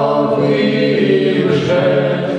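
Men's folk ensemble singing a Ukrainian Cossack folk song in several-part harmony, holding long sustained notes of a phrase.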